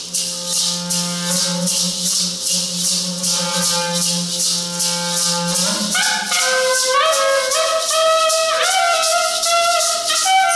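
Maracas shaking a steady beat, about three or four shakes a second, over a long low held note. About six seconds in, a clarinet comes in with a melody that steps up and down in pitch.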